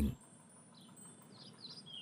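Faint birdsong: a run of short, high chirps beginning under a second in.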